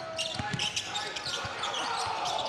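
Basketball dribbled on a hardwood gym floor, a few separate bounces, over the murmur of a large indoor crowd.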